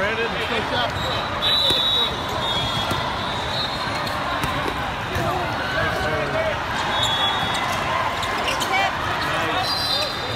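Busy sports-hall din: many voices chattering and volleyballs being hit and bouncing across the courts, with short high-pitched whistle tones about one and a half seconds in and again about seven seconds in.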